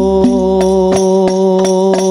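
Al-Banjari sholawat: a chorus of young men's voices holds one long sung note in unison, over a steady pattern of rebana frame-drum strokes, several a second.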